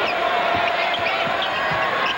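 Arena crowd noise over a basketball being dribbled on a hardwood court, a few irregular low thumps of the ball. A steady held tone runs underneath and stops near the end.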